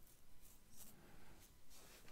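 Near silence: quiet room tone with a few faint, brief scratching rustles.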